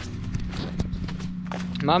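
John Deere 7-series tractor engine running with a steady low hum, with irregular clicks and crackles over it.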